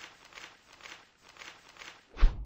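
Faint, evenly repeating soft swishes, about two a second, like light percussion in the soundtrack of an animated advert.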